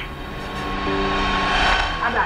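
Film scene-transition sound effect: a rush of noise over a held chord, swelling louder and cutting off near the end.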